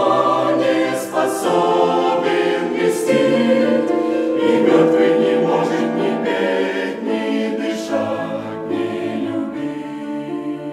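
Mixed church choir of men's and women's voices singing a Russian hymn in slow, sustained harmony. The singing softens over the last few seconds.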